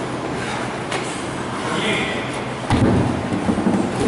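Gym noise during a burpee box-jump workout: background voices and movement on rubber flooring. About two-thirds of the way in, a sudden louder, deeper, uneven stretch of noise begins.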